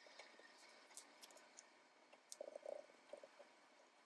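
Near silence with faint, soft rubbing and dabbing of a foam ink blending tool worked over a plastic stencil on cardstock, plainest about two and a half seconds in.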